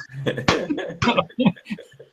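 Men laughing hard in short, choppy bursts, broken by coughs.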